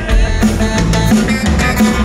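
Rock band playing live: drum kit keeping a steady beat under electric guitars and bass, with no singing.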